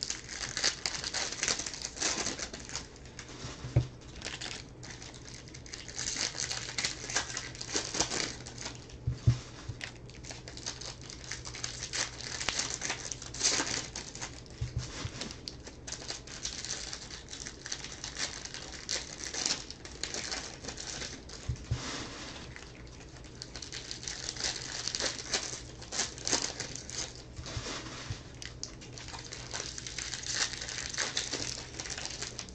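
Foil wrappers of baseball card packs crinkling and tearing as they are opened and handled, in irregular bursts of rustle. A couple of sharper knocks stand out, around four and nine seconds in.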